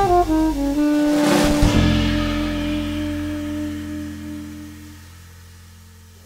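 Jazz trio playing the closing chord of a tune: the saxophone steps down a short phrase onto one long held final note over a low ringing double bass note, with a cymbal crash about a second in. The whole chord fades away.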